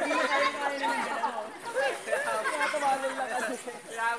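People chattering, voices overlapping.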